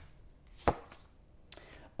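A single sharp tap of a card or hand on a hard tabletop while tarot cards are being handled, about two-thirds of a second in, followed by a few faint clicks near the end.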